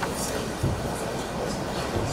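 Steady rumbling background noise of a conference room heard through the microphones, with two soft low thumps, one about half a second in and one near the end.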